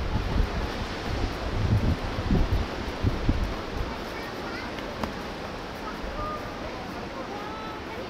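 Wind buffeting the microphone in gusts for the first few seconds, then settling into a steady outdoor wind rush, with faint voices of people nearby near the end.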